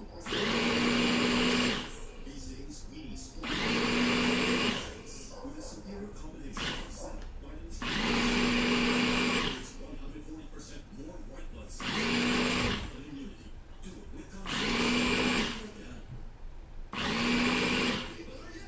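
Small electric blender with a top-mounted motor, run in six short pulses of one to two seconds each, chopping red onion slices in water. Each pulse is a steady motor whine that starts and stops abruptly.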